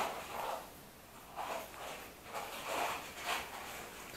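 Handling noise: a cardboard matchbox shifted and rubbed between fingers close to the microphone. It gives a sudden rustle at the start, then several softer scrapes spread through the rest of the time.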